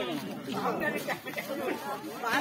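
Chatter of several people talking at once, with overlapping voices.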